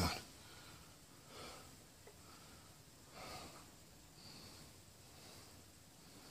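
Faint breathing close to the microphone over quiet room tone: two soft breaths about two seconds apart, then a fainter one.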